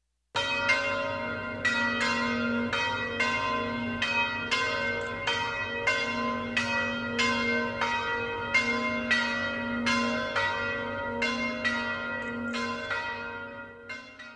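Church bells ringing, several bells of different pitch struck in turn at about two strikes a second, each ringing on under the next. The ringing starts suddenly and fades out near the end.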